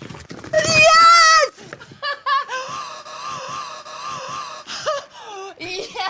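A woman shrieking excitedly, loudest about half a second in, then a long, wavering held cry.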